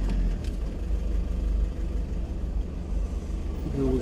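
Steady low engine rumble and road noise of a ZiL520 camper (Toyota Camroad chassis) rolling slowly forward, heard from inside the vehicle.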